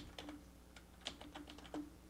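Faint typing on a computer keyboard: a scattering of irregular key clicks.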